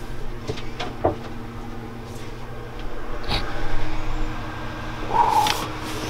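Cornstarch molding trays being lifted, knocked and shifted, with scattered knocks and scrapes, a louder run of handling noise about halfway through, all over a steady low hum.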